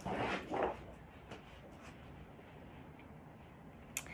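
Two brief rustles from a large paper board being handled, then quiet room tone, with a sharp click at the very end.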